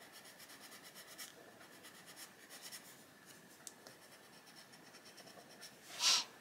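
Arteza Expert coloured pencil shading on paper: a faint, quick run of small scratchy strokes as the leaves are filled in.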